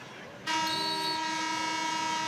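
Arena scoreboard horn sounding for the end of a wrestling period. One steady horn tone starts abruptly about half a second in and is held for about two seconds.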